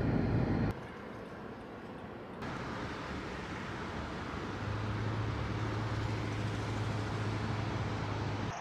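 Steady road and engine noise of a car driving, heard from inside the cabin. It drops suddenly less than a second in, grows again a couple of seconds later, and a low steady hum comes back around the middle.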